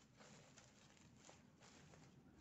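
Near silence, with a few faint, brief rustles of a ribbon bow being handled.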